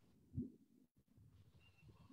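Near silence, with one brief, faint low sound about half a second in.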